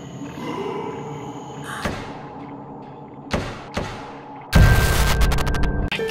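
Background music fading out, followed by two sharp thuds with ringing tails a little past the middle and then a loud, deep boom that holds until the end: cinematic sound-effect hits.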